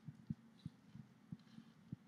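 Near silence: faint room tone with about half a dozen faint, short, low thumps at uneven intervals.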